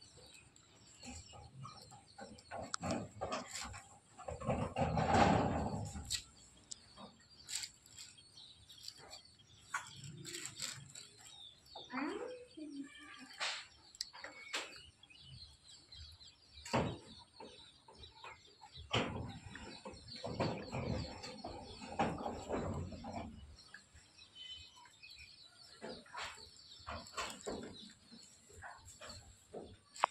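Birds chirping over a steady high chirring, with scattered sharp clicks and knocks and two louder, longer rustling stretches, about five seconds in and again from about nineteen to twenty-three seconds.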